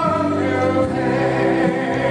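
Gospel song: a man singing long held notes into a microphone over musical accompaniment with choir-like backing voices.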